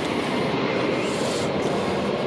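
Steady rushing noise of the 2001 Mercedes-Benz CL500 left running with its air conditioning on.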